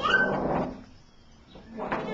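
Domestic cat giving two loud, rough meows, each opening on a short rising pitch and breaking into a raspy call, one at the start and another near the end.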